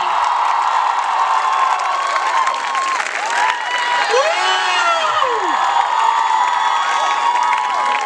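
Large audience cheering and applauding, a steady loud wash of clapping and many voices, with shouts that slide up and down in pitch.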